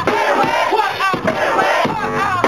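Crowd and rapper shouting together in a call-and-response chant at a live hip-hop show, loud and continuous.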